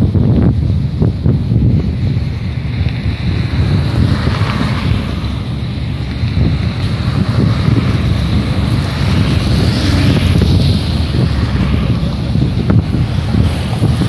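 Wind buffeting the phone's microphone, a loud uneven rumble, with road traffic passing close by and swelling twice as vehicles go past.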